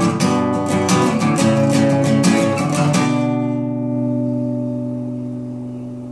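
Steel-string acoustic guitar strummed in quick, even strokes. About halfway through, a final chord is struck and left to ring, fading slowly.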